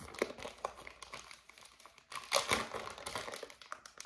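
Clear plastic zip-top bag of wax melts crinkling and rustling as it is handled and raised to be sniffed, with a louder stretch of crinkling about two seconds in.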